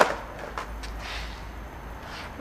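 A skateboard knocking on concrete: one sharp clack right at the start, then a couple of faint taps before the first second is out.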